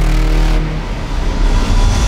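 Logo intro sting: loud electronic music and sound design over a deep, rumbling bass, dipping a little about a second in and swelling back up near the end.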